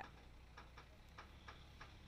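Near silence with faint, uneven ticking clicks, about three or four a second, over a low hum.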